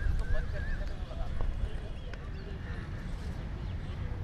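Outdoor city ambience: a steady low rumble of distant traffic, with bird calls and faint voices of people nearby, busiest in the first second or so.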